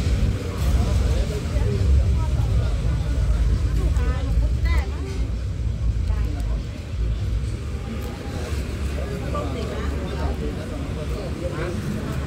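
Background voices talking at a market, over a constant low rumble.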